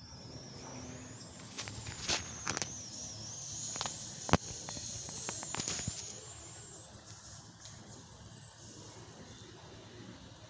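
Faint ground ambience from a live cricket broadcast: a low steady background with a thin high whine that drifts in pitch, and a few sharp clicks, the loudest about four seconds in.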